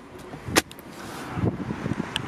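Centre-console armrest lid of a Mercedes-Benz CLK500 being handled and shut: one sharp click about half a second in, followed by soft rustling handling noise.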